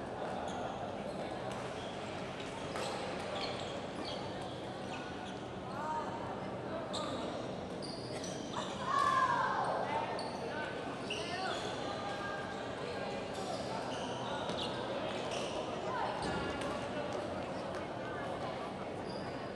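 Badminton doubles play in a sports hall: many short, high squeaks of court shoes and clicks of shuttlecock hits, over the hum of voices in the hall, with a louder falling squeal about halfway through.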